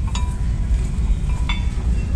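Two light metallic clinks with a short ring, about a second and a half apart, as steel bolts are set through a brake caliper mounting bracket into the upright. A steady low rumble runs underneath.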